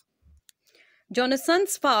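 A single sharp click of a computer mouse, about half a second in, with a soft low thump just before it.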